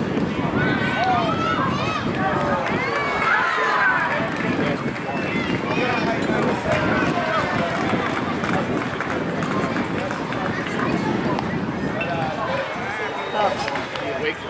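Several people talking over one another, with no clear words, throughout. A single sharp knock comes near the end.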